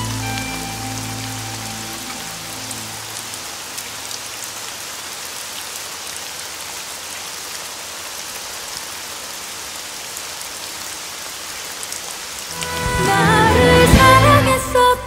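Steady heavy rain falling on a hard surface, while music fades out over the first few seconds; music swells back in near the end.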